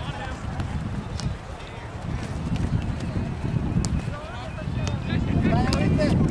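Indistinct shouts and calls from players and spectators across an open soccer field, mixed with wind rumbling on the microphone that grows stronger near the end.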